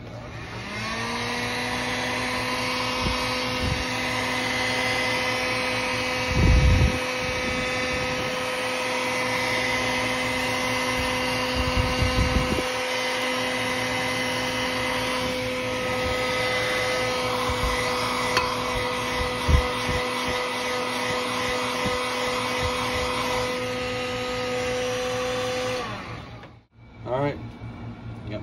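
Heat gun switched on, its fan motor spinning up and then running steadily with a hum and a rush of hot air as it blows over molten soft plastic in a glass cup to knock the bubbles down. Near the end it is switched off and winds down. Two low thumps come partway through.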